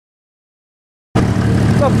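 Silence, then about a second in a Corvair 140 air-cooled flat-six with four carburetors cuts in abruptly, idling steadily.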